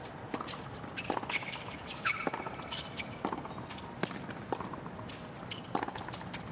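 A tennis rally on a hard court: a serve, then racket strikes on the ball about once a second, with shoe squeaks and footsteps over a hushed crowd.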